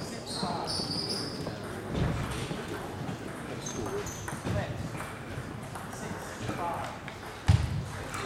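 Table tennis rally in a large hall: the ball clicking off bats and table, and shoes squeaking on the wooden floor, over spectators' chatter. A heavy thump near the end is the loudest sound.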